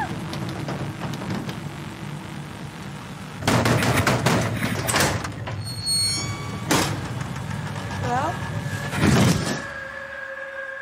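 Horror-film soundtrack: a van's engine running, then a sudden loud struggle with a sliding door and a sharp bang, a short cry, and a held music tone near the end.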